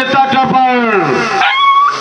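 A long drawn-out voiced call: one note held steady, then sliding down in pitch, followed near the end by a higher, thinner held note.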